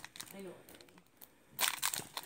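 A foil trading-card booster pack wrapper crinkling in the hands: a short burst of crinkling about a second and a half in, after a quiet stretch.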